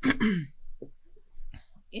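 A woman clearing her throat once, a short rough burst lasting about half a second at the start.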